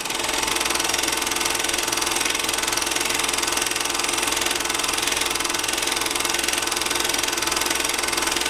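Movie projector sound effect: the steady, rapid mechanical clatter of a film projector running, starting suddenly.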